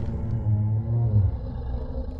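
Low, rumbling call of an animated Brachiosaurus: a dinosaur sound effect with a slightly wavering deep pitch. The call fades about a second in, leaving a low rumble.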